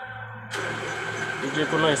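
Toshiba e-Studio photocopier running with a steady low hum. About half a second in, a loud rushing hiss starts abruptly and carries on, and a man starts talking near the end.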